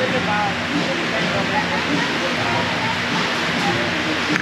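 Indistinct voices talking in the background over a steady hiss of ambient noise.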